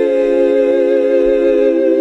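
Voices holding one sustained chord: the angelic choir 'ahh' of the heavenly meme sound effect, steady and loud.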